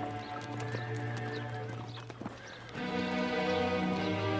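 Hooves clip-clopping as pack animals move off, over background film-score music that swells in louder about three seconds in.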